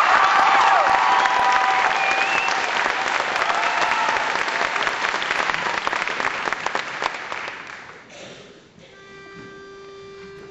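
Audience applauding and cheering with high whoops right after an a cappella song ends. The applause fades away over about eight seconds, and near the end a single steady note sounds faintly.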